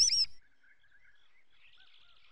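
A rubber ducky squeaks once, a short high squeak that rises and falls in pitch as it is squeezed. Faint chirping follows.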